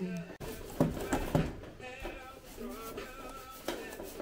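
Background music with a sung or pitched melody, with three sharp knocks between about one and one and a half seconds in.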